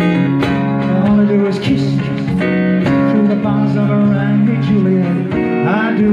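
Acoustic guitar strummed in steady chords: an instrumental passage of a live song.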